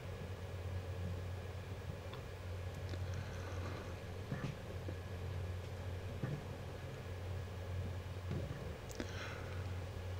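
Car interior noise while driving on a snow-covered road: a steady low drone from the engine and tyres, with a few faint clicks.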